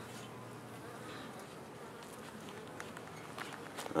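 Faint, steady buzzing of a small cluster of honeybees on the ground by a bait hive.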